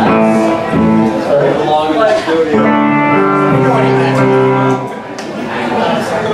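Electric guitar played loosely between songs: a few single notes and chords, several held and left to ring for a second or two, with voices talking underneath.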